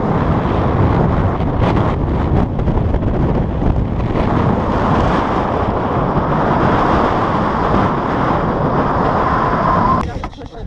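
Wind buffeting the camera's microphone: a loud, steady, deep rush of noise that stops abruptly at the end.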